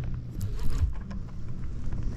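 Wind buffeting the microphone as a steady low rumble, with a few faint clicks from a baitcasting reel being cranked against a hooked fish.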